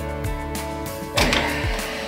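Background music with a steady beat; about a second in, a ratcheting pipe cutter starts clicking and crunching as it bites into red plastic pipe.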